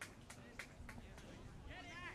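Quiet open-field sound with a few light knocks in the first second and a distant voice calling out briefly near the end.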